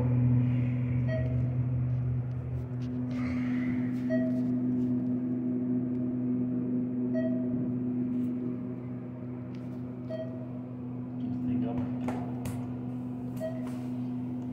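ThyssenKrupp traction elevator car in motion, with a steady hum and a short electronic beep about every three seconds, five times in all.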